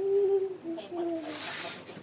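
A child humming a few wordless notes, the first held about half a second and the next ones shorter, with a brief rush of noise in the second half.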